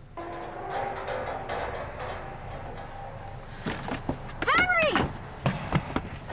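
High-pitched wailing cries, each rising and then falling in pitch, two of them in the second half, after a few seconds of rustling noise.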